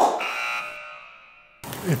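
A sharp click followed by a chime-like metallic ringing tone that fades away over about a second and a half and then cuts off abruptly.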